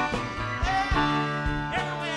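Live rock band playing an instrumental break: an electric guitar lead with bent notes over keyboards, bass and drums.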